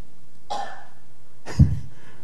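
A man coughing or clearing his throat: a soft short one about half a second in, then a louder, brief cough near the end.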